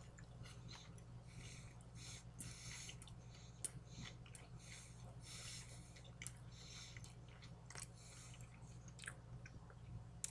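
Faint chewing of a mouthful of sub sandwich: soft wet mouth sounds and small clicks, one sharper click about three and a half seconds in, over a steady low hum.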